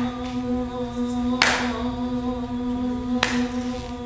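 Several voices humming one steady, unbroken note together, with a sharp percussive hit twice, about two seconds apart.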